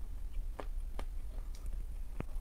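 Quiet chewing of soft baked chalk: a few faint, scattered mouth clicks over a low steady hum.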